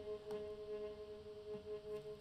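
A time-stretched viola sample holding one long A-flat note, a steady drone with reverb, playing back from a DAW.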